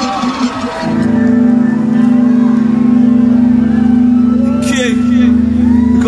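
A live band's steady held low chord through the PA, organ-like, coming in about a second in and holding without change. Shouts from the crowd rise over it near the end.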